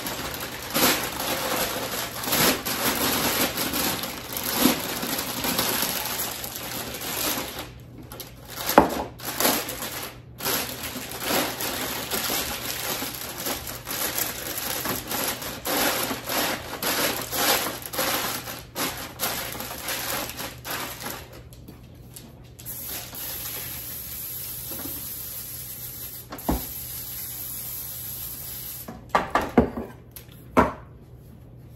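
Foil slow-cooker liner crinkling and rustling as it is unfolded and pressed into the cooker's pot, in dense crackly bursts. It goes quieter for the last several seconds, with a few sharp clicks near the end.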